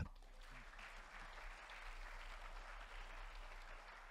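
Faint audience applause, swelling slightly and then dying away near the end.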